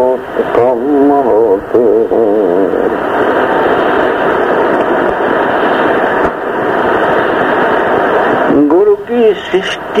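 Old, muffled recording of devotional singing: a single voice with a wavering pitch, then many voices chanting together in a dense chorus for several seconds, then a single voice again near the end.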